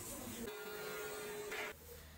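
Faint shop background noise: a low steady hum with a single held tone for about a second, which stops abruptly near the end as the sound falls to quieter room tone.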